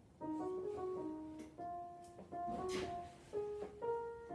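Electric keyboard with a piano sound playing a classical melody in single notes, in a few short phrases with brief breaks between them.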